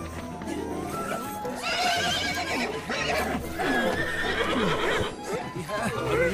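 A horse whinnying several times as it balks and shies, starting about a second and a half in, over background film music.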